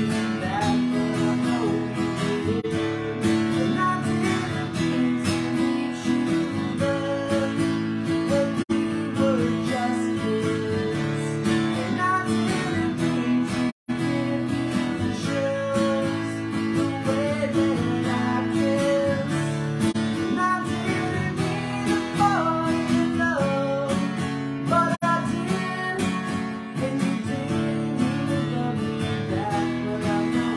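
An acoustic guitar strummed in chords with a man singing along, a solo live performance of a song. The sound cuts out completely for an instant about halfway through.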